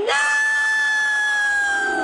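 A cartoon woman's long, high-pitched scream, swooping up sharply at the start, then held on one note that slowly sinks a little.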